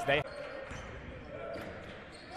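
Basketball being dribbled on a hardwood gym floor, faint, under the hum of a gymnasium.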